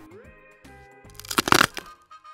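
Toy play-food pear being cut in two with a wooden toy knife: a quick run of sharp crackles lasting about half a second, starting about one and a half seconds in, over light background music.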